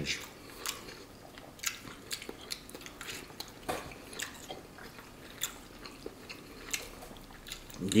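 A person chewing a mouthful of beef brisket, with scattered small wet clicks and smacks of the mouth.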